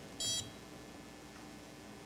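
Card reader giving one short, high electronic beep about a quarter of a second in as it reads a card, the sign that the reader is now working.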